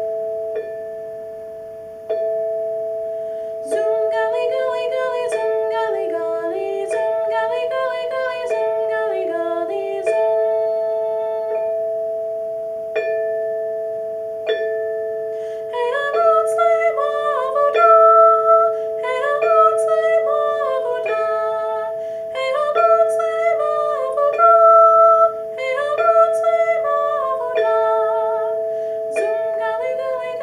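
An Orff barred instrument struck with mallets plays a bordun, A and E together, as steady half notes about every one and a half seconds. A woman's voice sings the melody over it from about four seconds in, with a pause of a few seconds near the middle.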